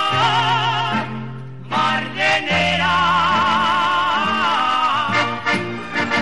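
Navarrese jota sung in a high, full-throated voice with wide vibrato on long held notes over accordion accompaniment, the phrase closing on a final held note about five seconds in.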